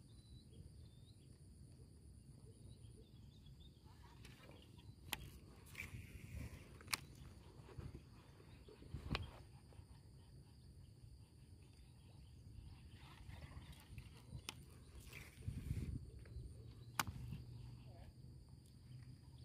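Quiet reservoir-bank ambience: a steady high-pitched drone of insects, broken by a few sharp clicks spread through it and a brief low rumble near the end.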